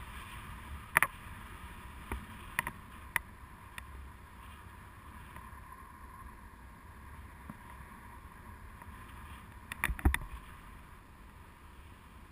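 Steady rush of airflow over the camera's microphone in flight under a tandem paraglider, with a few sharp clicks in the first few seconds and a louder cluster of knocks about ten seconds in.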